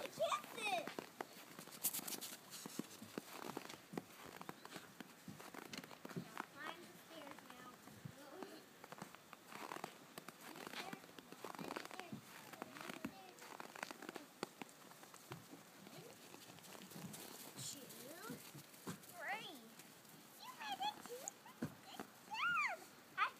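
Crunching steps on packed snow throughout, with high, bending cries near the start and again in the last few seconds.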